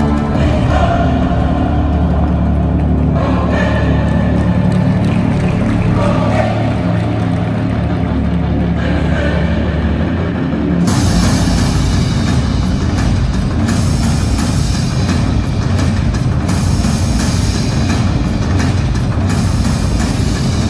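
Loud music playing. It starts with sustained low tones, then about halfway through switches abruptly to a fuller, busier section.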